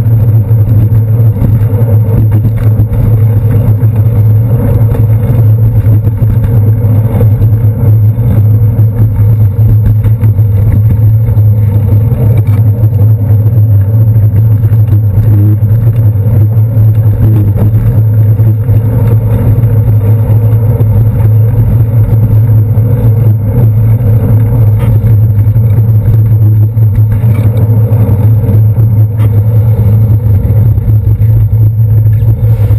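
Steady, loud low rumble of a bicycle ride in city traffic, picked up by a handlebar-mounted GoPro: road vibration through the handlebars mixed with the noise of surrounding cars and buses.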